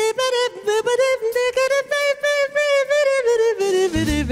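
A woman singing a long melodic line with vibrato over almost no accompaniment, the band's bass and drums dropped out beneath her; near the end the full band comes back in.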